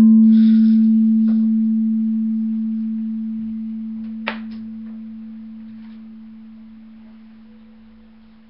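Singing bowl ringing on after being struck: one pure low tone with a faint overtone an octave above, fading slowly and evenly. A faint tap comes about four seconds in.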